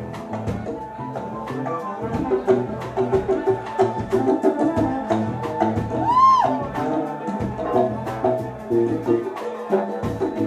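Live Cuban salsa band playing, with percussion keeping a steady beat under keyboard and bass. One pitched note swoops up and back down a little past the middle.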